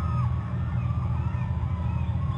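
A distant flock of birds calling at once, many overlapping honk-like calls, over a steady low hum.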